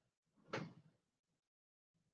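Near silence, broken by one brief, faint noise about half a second in.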